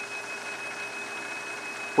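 Steady even hiss of a small reef aquarium's running water circulation, with a thin, steady high whine beneath it.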